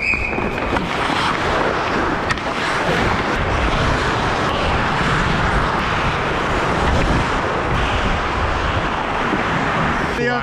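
Steady rush of wind buffeting a helmet-mounted action camera's microphone as the wearer skates fast, mixed with ice-hockey skate blades scraping the ice. A couple of sharp clicks come in the first few seconds.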